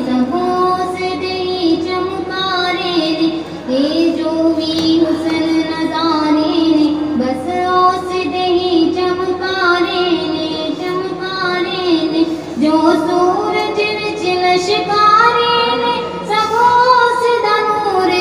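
A woman singing a naat, an Islamic devotional song, in long drawn-out held notes.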